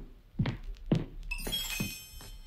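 Radio-play sound effect of heavy footsteps as a man walks out, several knocks spaced about half a second apart. From about a second and a half in, a steady ringing, bell-like tone sounds over the last steps.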